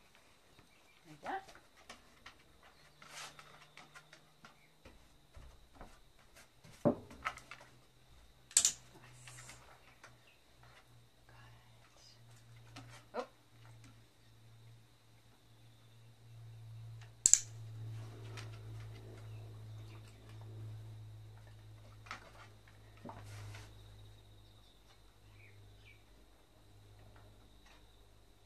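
A series of short, sharp clicks and taps, the loudest about nine and seventeen seconds in, over a faint steady high whine and a low drone that swells in the second half.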